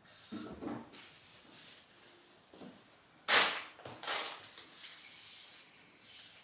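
Close handling noises of cleaning rubber plant leaves with a cloth: soft rustles and rubs, with one sudden louder swish about three seconds in.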